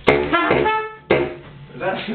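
Baritone saxophone, a second saxophone and a trumpet playing together for about a second, then a short second burst that dies away. It is a false start: the parts do not sit right together because the players have not agreed on the key.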